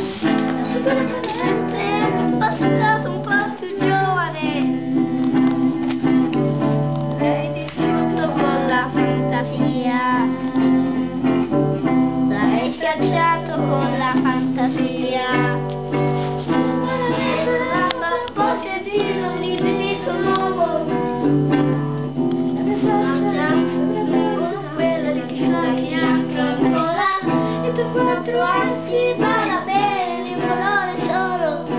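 A classical acoustic guitar being played in steady, held chords, with a child's voice singing along over it.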